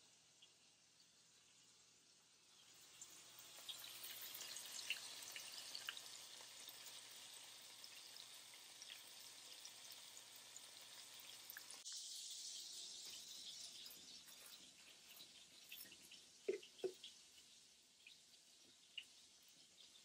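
Beef burger patties frying in a skillet: a faint sizzle with a steady scatter of small crackles from the fat. The sizzle changes abruptly about halfway through, and two light knocks come a few seconds before the end.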